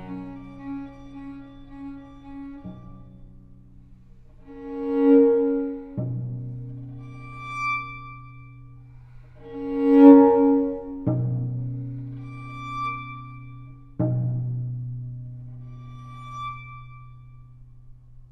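Solo cello playing slowly over a low held note: two loud swelling notes, then three sharp-attack notes about three seconds apart that ring and fade, with short high thin tones between them.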